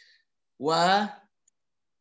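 Mainly speech: one drawn-out spoken syllable, 'wu', in the middle. A faint short click comes just before it and a tiny tick comes after.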